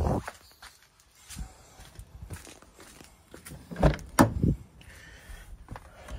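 Footsteps and handling noise from walking around to the front of the vehicle, with two heavier thumps about four seconds in as someone gets into the driver's seat.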